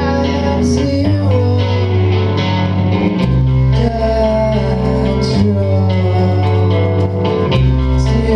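Live indie rock band playing: electric guitar lines over drums and a sustained low bass line that moves to a new note every two seconds or so.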